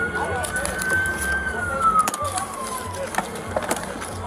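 A siren sounding one slow wail: a single tone that holds high, then glides down and fades away about three seconds in.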